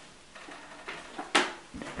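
Quiet small-room background with a few faint knocks and one sharper, louder knock a little past halfway that dies away quickly.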